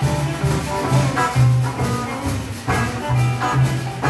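Live small band playing an upbeat blues and rock-and-roll number on electric guitars, drum kit and upright double bass, the bass walking a run of evenly spaced low notes under the guitars and cymbals.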